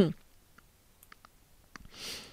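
A few faint, scattered clicks of a computer mouse.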